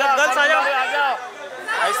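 Speech only: people talking and calling out, with no other clear sound.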